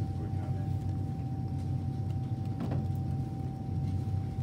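Steady low hum of a meeting room's machinery, with a thin constant high tone above it and one brief faint noise a little past halfway.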